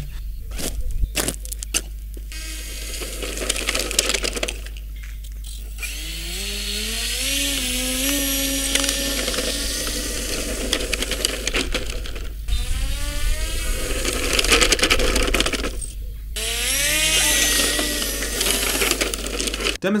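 Small electric motor and propeller of an RC ground-effect craft whining in throttle bursts. Its pitch rises as it spools up, it cuts out briefly several times, and a strong airy hiss runs over it.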